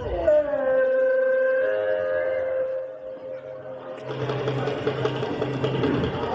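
A voice holds one long drawn-out note with a slight waver, gliding down at the start and fading after about three seconds; from about four seconds in, a busier mix of music-like sound with a steady low hum follows.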